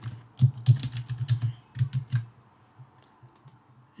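Typing on a computer keyboard: a quick run of keystrokes over about two seconds, then a few fainter taps as it trails off.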